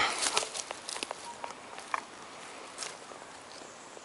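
Light rustling and a few soft clicks and taps from handling in dry forest leaf litter, busiest in the first second and then fading to a faint hiss.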